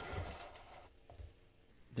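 Handling noise from the plastic back cover of a film scanner being set down on the tabletop: a soft scraping rustle that fades within the first second, then a faint knock.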